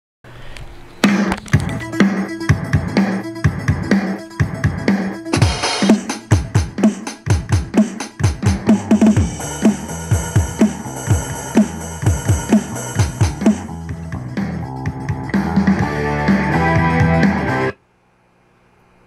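Rock music with a drum kit playing hard over sustained synth or keyboard chords, full of quick drum strokes and fills; it all stops suddenly near the end.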